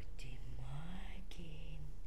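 A soft, low wordless hum or murmur: it rises in pitch over the first second, then a shorter one is held level, with a breathy whisper-like hiss above it and two small clicks.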